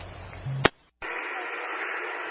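Fire-department radio traffic through a scanner feed, between transmissions. The hiss of one transmission ends in a short hum and a sharp click, there is a brief silence, and then the next transmission keys up with the steady hiss of the open channel before anyone speaks.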